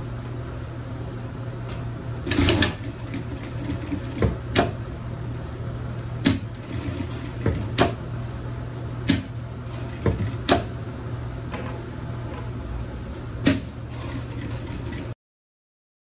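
Industrial sewing machine with its motor humming steadily as fabric is sewn, broken by about nine sharp, irregular clicks and knocks. The sound cuts out abruptly near the end.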